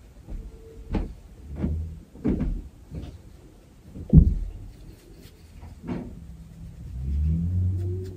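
A few soft knocks and bumps from handling, the loudest about four seconds in, then a low hum near the end.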